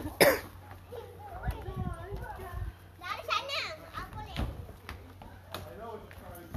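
Young children's voices and babble with background playground chatter, and a short loud burst of noise, like a cough, just after the start.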